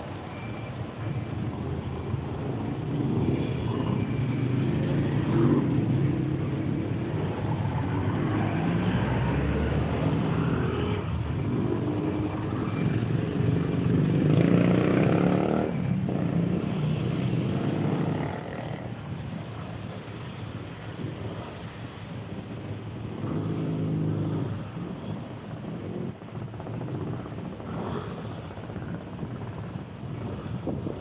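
Street traffic: cars, trucks and motorcycles passing close by, engines running with road noise. Louder through the first half, quieter for the last third.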